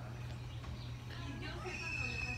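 Distant, indistinct voices and calls over a steady low hum, growing busier in the second half with faint rising and falling cries.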